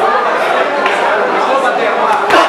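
Crowd chatter: many voices talking and calling out over one another at once.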